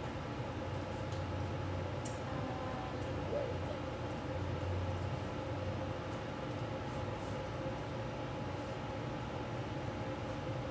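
Steady background hum with faint steady tones, and a faint tap about two seconds in.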